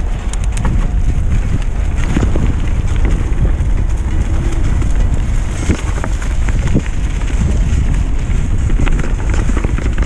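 Mountain bike riding down a leaf-covered dirt trail: steady tyre and ride noise with scattered sharp knocks and rattles from the bike over bumps, and wind buffeting the microphone.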